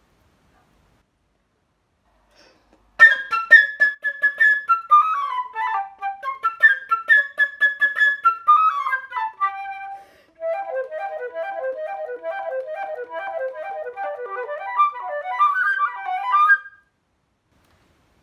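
Solo silver concert flute playing a fast, bright passage that imitates a bird, with quick runs and rapidly repeated notes. It starts about three seconds in, pauses briefly near the middle, and stops a little before the end.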